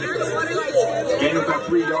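Several people talking over one another close by: spectator chatter.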